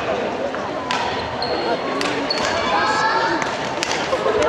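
Badminton rackets hitting shuttlecocks in a gymnasium, a few sharp hits echoing in the hall, with short squeaks of shoes on the wooden court floor, over steady background chatter.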